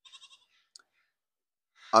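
A man's short, faint breath out at the start of a pause, a single small mouth click about three-quarters of a second in, then near silence until he starts speaking again at the very end.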